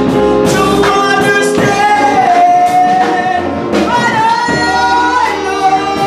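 A solo singer performing a song, holding long wavering notes of a second or more, over instrumental accompaniment with a bass line.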